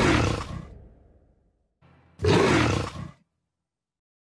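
Big-cat roar of the Jaguar car brand's sound logo, heard twice: a first roar fading out about a second in, then a shorter growl about two seconds in.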